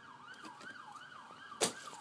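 Faint emergency-vehicle siren in a quick yelp, its pitch rising and falling about three times a second. A single short knock sounds about one and a half seconds in.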